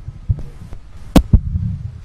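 Low, uneven rumble with several sharp knocks, the loudest two close together a little past a second in: the microphone being bumped and buffeted.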